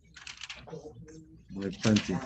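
Light typing on a computer keyboard under a man's low muttering, with a short louder spoken sound near the end.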